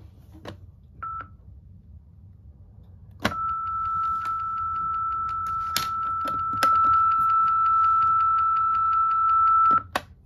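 Fisher-Price Linkimals turtle toy in its test mode: a click and a short beep about a second in, then a steady high test tone held for about six and a half seconds with rapid even ticking over it. A second, higher tone joins partway through and it gets louder, then the tone cuts off suddenly near the end.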